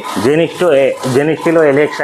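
A man talking: continuous speech with no other sound standing out.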